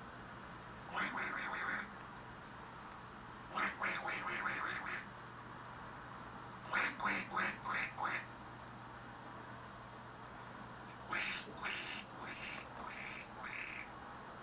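A person's voice making quacking, duck-like noises in four bursts of quick repeated calls. The third burst is a run of about six distinct quacks.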